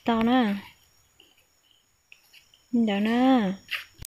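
Insects calling in a steady, thin, high-pitched drone, with a few faint short chirps in the quiet stretch; a person speaks briefly at the start and again near the end.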